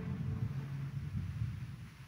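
Low, uneven rumble of church room noise with faint shuffling as the congregation kneels.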